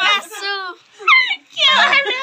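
Young women laughing and squealing in high-pitched voices, in short bursts with falling pitch and a brief break about a second in, getting louder near the end.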